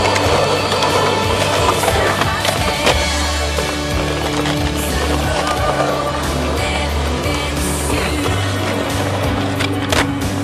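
Skateboard wheels rolling on rough asphalt, with a few sharp clacks of the board, the loudest about three seconds in, over background music.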